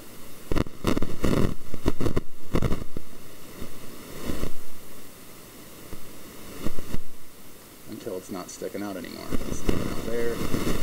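A quick run of sharp knocks and clicks over the first three seconds, a couple more later on, and low, indistinct speech starting near the end.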